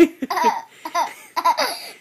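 A young boy laughing hard in a string of short bursts.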